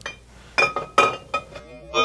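Glass whiskey bottles clinking against each other: three sharp, ringing clinks about half a second apart, as bottles knock together on the shelf.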